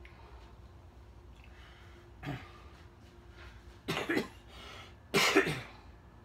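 A man coughing three times, each cough louder than the last, after inhaling a large vape hit.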